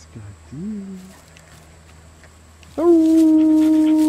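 A dog howling: after a short spoken word, a long, loud, steady note starts about three seconds in and is held to the end.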